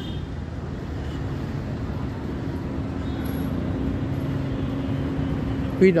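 A motor vehicle engine running steadily, a constant low hum over street noise.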